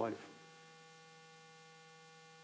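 Faint, steady electrical hum made of several constant tones, heard in a pause after the last word of speech ends in the first moment.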